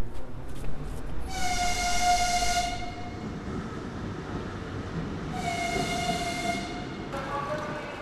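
Locomotive horn sounding two steady, high blasts, each about a second and a half long and about four seconds apart, over the low rumble of trains.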